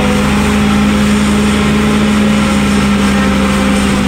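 Valtra A950 tractor's diesel engine running steadily under load, driving a PTO forage harvester that is chopping giant sorghum. A constant, even drone with a strong steady hum.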